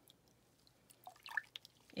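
Faint water drips falling into a tub of water, a few small plinks in the second half.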